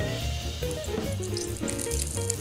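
Background music with steady held notes and a bass line, over a faint, even hiss from the frying pan with its freshly poured sesame oil.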